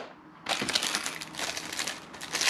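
Plastic fishing-lure packaging crinkling and crackling as it is handled, starting about half a second in and going on as a dense run of quick crackles.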